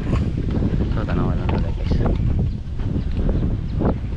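Wind buffeting the camera's microphone: a steady, heavy rumble, with snatches of a voice in it.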